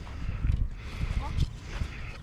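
Footsteps walking across grass scattered with dry leaves, soft irregular thuds about twice a second.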